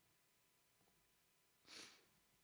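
Near silence, then one short breath out close to the microphone near the end.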